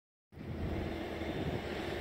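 A moment of silence, then a steady low outdoor background rumble.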